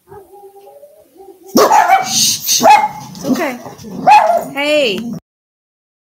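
Dogs barking loudly: a faint whine, then from about a second and a half in a run of sharp barks and yelps that breaks off abruptly near the end.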